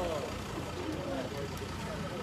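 Indistinct background voices of several people talking over a steady low rumble.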